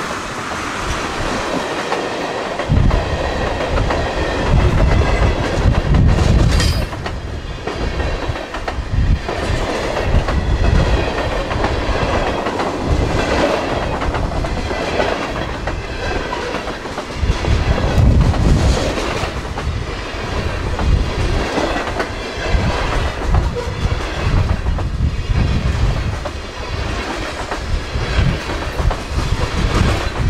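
Freight cars of a Buffalo & Pittsburgh Railroad train rolling past at speed: steel wheels clattering over the rail joints and crossing, with a heavy rumble that swells and fades as each car goes by.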